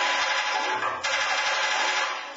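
Experimental electronic music: a dense, hiss-like noise that cuts in and out abruptly in blocks about a second long, with a low hum coming and going beneath it.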